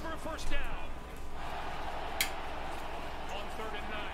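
Broadcast audio from a football highlight: a man's voice for about a second, then a steady background of noise with one sharp click about two seconds in.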